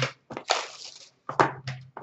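A short rustling scrape of trading-card packaging being handled, with a light click before it and another click near the end.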